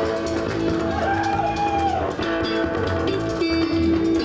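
Rock band playing live in an instrumental passage with no singing: guitars, bass and drum kit. About a second in, one held note bends up and falls back down.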